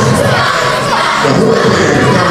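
Crowd of children and adults talking and shouting over one another, many voices at once.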